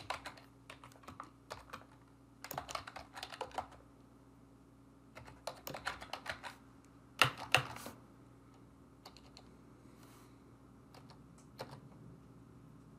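Typing on a computer keyboard: keystrokes in short runs separated by pauses, the loudest couple of strokes about seven seconds in, then only a few scattered keystrokes.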